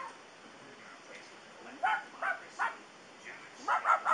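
Dog giving three short whimpering yips about half a second apart, near the middle.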